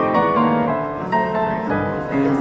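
Steingraeber grand piano being played: a run of notes and chords struck every half second or so, each left ringing under the next.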